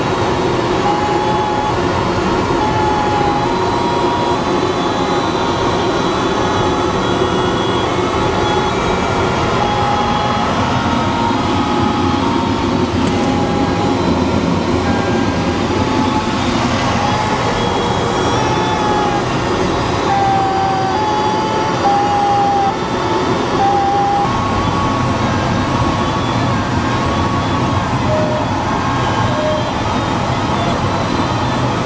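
Steady rush of air over a DG-300 glider's canopy in flight. Over it a cockpit electronic audio variometer sounds short beeps that step up and down in pitch throughout, dropping lower near the end.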